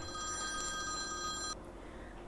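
Smartphone ringing with a steady electronic ringtone that cuts off about one and a half seconds in as the call is picked up.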